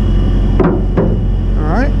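Two knocks about half a second apart as a heavy fluid transfer hose is thrown up onto a vac trailer, over the steady low hum of the truck's engine.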